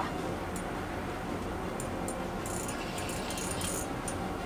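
Ice fishing reel being cranked with a fish on the line, giving faint scattered clicks and rattles, most of them in a cluster in the second half, over a steady low background noise.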